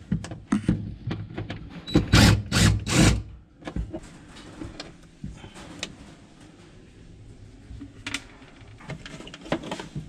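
Handling noise inside a refrigerator's freezer compartment: knocks, clicks and plastic rattling as the fan housing and its parts are worked loose. The loudest is a cluster of three quick bursts about two to three seconds in, with a cordless drill-driver run on the panel screws.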